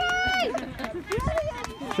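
A high-pitched shout held for about half a second at the start, followed by scattered shorter shouts and voices from the touchline as a player runs in to score.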